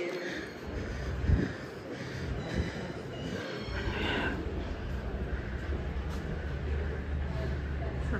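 Railway station platform ambience: a steady low rumble of trains that settles in about three and a half seconds in, with faint voices in the background.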